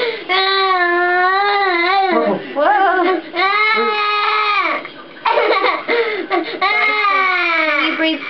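A young boy crying in distress: loud, long drawn-out wails with short breaks for breath between them.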